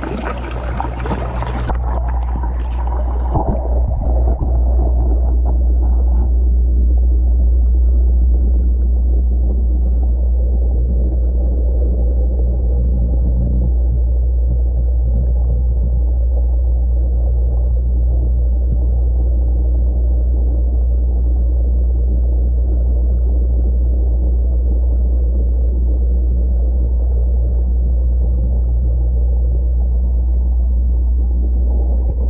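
Swirling water in a vortex compost tea brewer heard with the microphone dipped under the surface: a loud, steady, muffled low rumble. The brighter sounds of surface splashing drop away about two seconds in as the microphone goes under.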